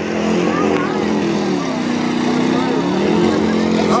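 Car engines on the race track revving up and down, their pitch rising and falling in slow sweeps, with spectators' voices over them.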